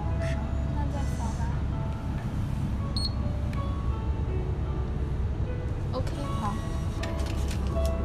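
Shop ambience: a steady low hum with background music and faint, indistinct voices, and a few brief clicks.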